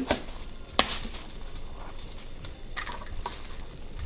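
A kitchen knife cutting through sub sandwich rolls on a foil-lined tray: soft scraping with a few sharp clicks, the strongest about a second in.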